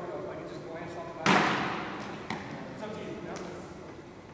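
One loud strike of steel practice swords meeting, echoing in a large hall, followed by a lighter knock about a second later.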